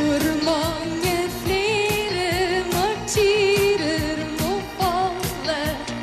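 A woman sings a pop melody with vibrato in Norwegian, over a live band and orchestra backing with a steady drum beat.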